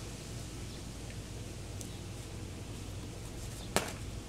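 Steady outdoor background noise, then a single sharp clack near the end as a plastic water bottle hits the asphalt driveway.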